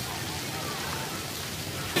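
Steady hiss of splash-pad water jets spraying up and splattering onto wet concrete.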